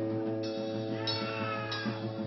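Live rock band holding a ringing chord on guitars, with a high wavering squeal gliding over it and little drumming.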